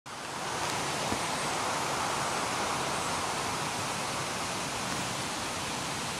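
Steady rushing hiss of background noise, even throughout, with no distinct events apart from one faint tick about a second in.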